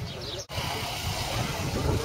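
Outdoor street noise with a low rumble that cuts off abruptly about half a second in, then resumes as road traffic noise with a faint murmur of voices.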